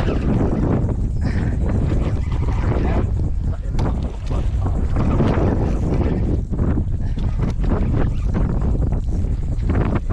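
Wind buffeting the microphone in a steady low rumble, with scattered clicks and rustles of handling while a hooked fish is played on rod and reel.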